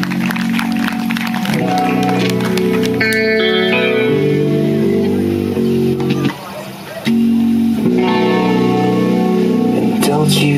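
Guitar-and-drums rock band playing live without vocals: electric guitar chords through a Marshall amplifier, with drum and cymbal hits in the first couple of seconds. The guitar drops away briefly about six seconds in and comes back in a second later.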